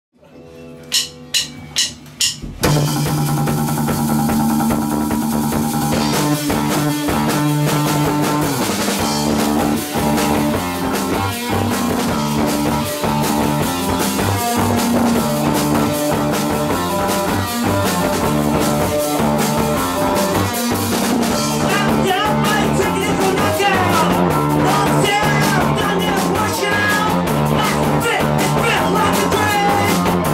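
Live rock band performing: about five sharp hits in quick succession, then drums, electric guitars and bass come in together about two and a half seconds in and play on at a steady level.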